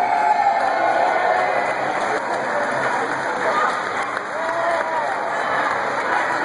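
A crowd of spectators cheering and applauding, with overlapping shouts and voices.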